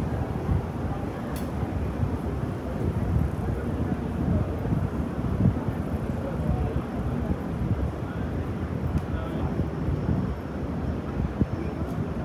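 Busy city street ambience: a steady low background noise of traffic, with passersby talking indistinctly.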